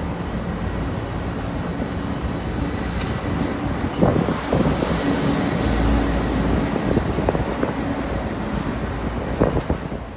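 Street traffic and a bus engine running, heard from the open top deck of a sightseeing bus, as a steady low rumble. The rumble swells briefly about six seconds in, and a few sharp knocks come about four seconds in and again near the end.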